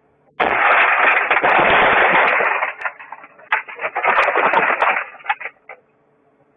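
A taxi's side window being smashed: a sudden loud crash of breaking glass about half a second in that runs on for about two seconds, then a second burst of glass noise with a few sharp clicks near the end.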